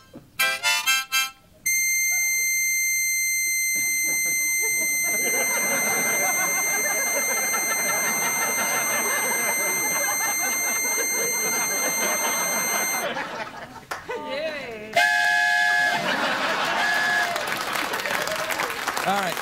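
Harmonica played in quick notes, then one high note held steady for about eleven seconds that cuts off abruptly, while studio audience noise swells underneath. Near the end come a couple of shorter held notes and crowd voices.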